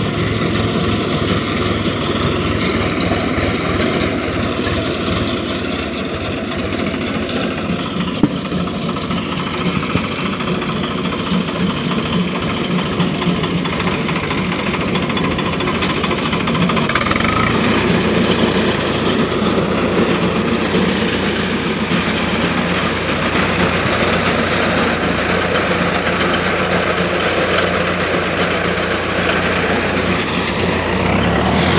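Swaraj tractor's diesel engine running steadily as the machine cuts through a standing sorghum crop; about halfway through, its low engine note becomes steadier and stronger.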